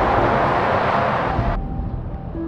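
Lorry traffic on a motorway: a loud, steady rush of tyre and engine noise that cuts off abruptly about one and a half seconds in, leaving a quieter traffic rumble.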